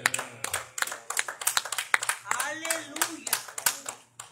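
Hands clapping irregularly, several claps a second, from a church congregation responding to a testimony. A voice calls out in the middle of the clapping.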